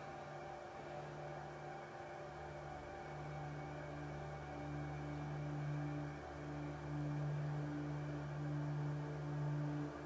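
Soft ambient background music: low sustained drone notes that swell gently, with a higher note entering a few seconds in.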